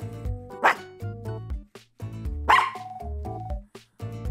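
A small mixed-breed dog barking twice, short demanding barks that nag her owner, over light background music.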